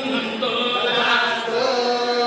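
A man chanting Hindu ritual mantras into a microphone, in long held notes that bend slowly in pitch.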